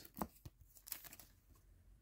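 Faint handling of hockey cards: a few soft clicks and rustles as the cards are moved and flipped through the hands, with near silence between them.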